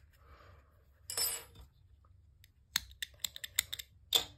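Yarn rustling briefly as it is drawn through while tying off, then a quick run of about ten light clicks and taps from a crochet hook and scissors being handled on a wooden table.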